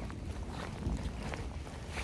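Wind buffeting the microphone: a steady low rumble under an even hiss, with a few faint ticks, as the camera is carried through the woods in gusty pre-storm weather.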